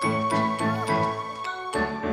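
Background music with a steady pulse of low notes under long, high ringing tones.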